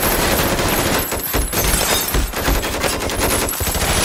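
Sustained rapid gunfire, shots packed closely together without a break, with a few heavier low thuds in the middle.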